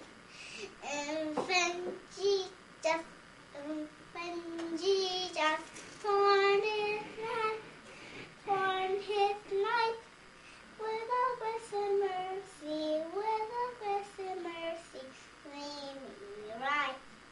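A young girl singing a song alone without accompaniment, in phrases of held notes with a slight waver in pitch and short breaths between them.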